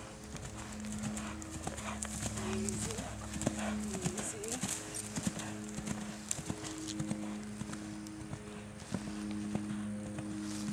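Hoofbeats of a horse cantering on a soft dirt arena: a run of dull knocks under steady held tones.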